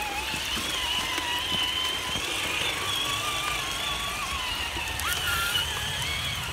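Electric motors and geartrains of scale RC crawler trucks whining as they climb a muddy ditch, the pitch wandering with the throttle and rising briefly about five seconds in, over a low wash of running water.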